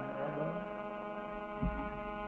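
A steady electrical hum in the recording, with a brief low thump about one and a half seconds in.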